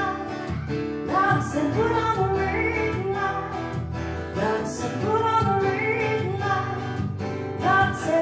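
A woman singing over a steadily strummed acoustic guitar.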